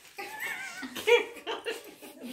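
A small child's high-pitched squealing: one wavering squeal, then several short high cries.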